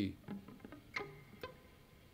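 Electric guitar played softly: a few separate plucked notes of a G major arpeggio (G, B, D), each one short and quickly damped, with no chord left ringing.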